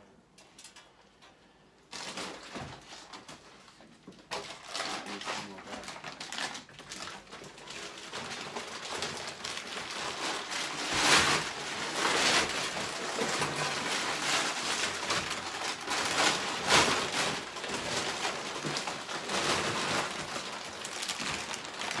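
Broken plaster and brick rubble being gathered up by hand and dropped into a plastic builder's bag: a busy run of rustling, scraping and clattering, with a few louder knocks. It starts about two seconds in and grows busier from about eight seconds in.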